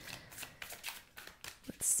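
A deck of oracle cards shuffled by hand: a quick, irregular run of soft card clicks and slaps.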